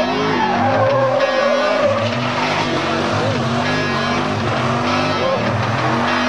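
Car tires squealing through a burnout, a wavering screech over a rock song with distorted electric guitar.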